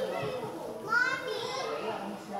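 Indistinct chatter and children's voices, with one higher child's voice calling out about a second in.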